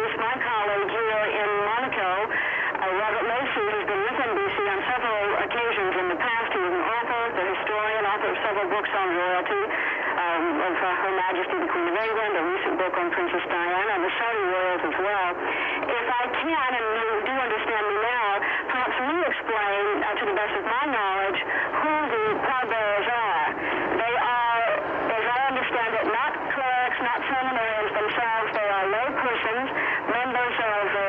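A voice coming over a faulty satellite audio link from a remote correspondent, warbling and garbled without a pause. Nothing above a narrow band of pitch gets through.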